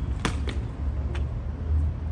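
Evzone guards' hobnailed tsarouchia shoes striking the marble pavement as they step in the changing-of-the-guard drill: three sharp clacks, two in quick succession and a third about half a second later, over a steady low rumble of traffic or wind.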